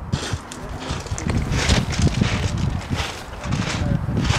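Footsteps on a beach, about two steps a second, with wind rumbling on the microphone.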